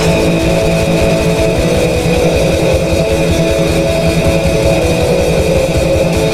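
Black metal music: distorted electric guitar and bass over fast drumming with a constant cymbal wash, in a dense, loud wall of sound.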